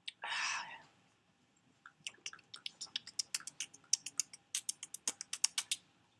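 A short breathy rush of noise at the start, then about four seconds of light, sharp clicks coming several times a second, like keys or taps on a hard surface.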